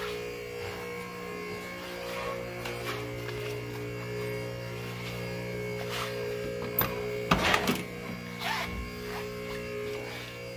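A steady electrical hum. About seven seconds in, the push-button door latch of a 1970 Chevelle clicks and the door clunks open.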